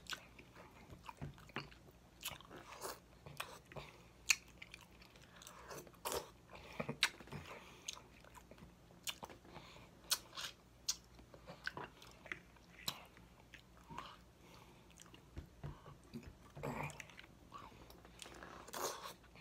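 Close-miked chewing and wet mouth sounds of a person eating baked chicken, with many sharp smacks and clicks at irregular intervals.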